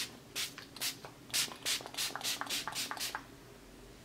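Anastasia Beverly Hills Dewy Set setting spray being pumped onto the face: about a dozen short sprays in quick succession, stopping about three seconds in.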